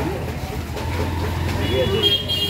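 Street traffic noise with indistinct voices: a vehicle engine rumbles steadily, and a horn starts sounding near the end.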